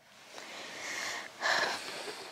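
A person breathing out hard through the nose close to the microphone, a longer breath and then a louder short one about one and a half seconds in.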